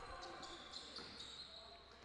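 Faint basketball dribbling on a hardwood court in a large, empty hall.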